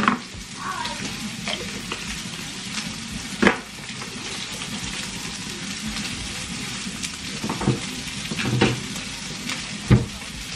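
Scotch fillet steak sizzling steadily in a frying pan, with a sharp knock about a third of the way in and a few softer clicks near the end.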